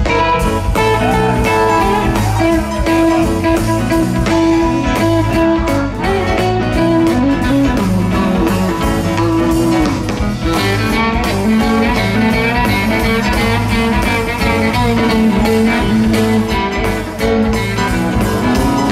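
Live rock band playing an instrumental passage: an electric guitar lead with bent notes over bass, drum kit and keyboards, recorded from the audience.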